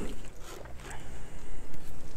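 Faint clothing rustle and handling noise as a pistol is drawn from an appendix-carry holster and brought up in both hands, with a low background rumble.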